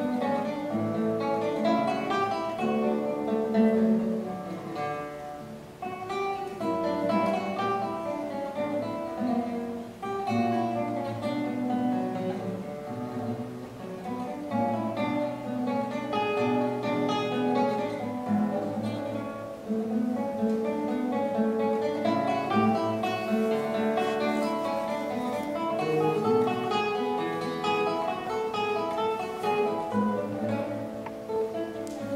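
Solo classical guitar played fingerstyle, a continuous flow of plucked notes with brief dips in loudness a few times.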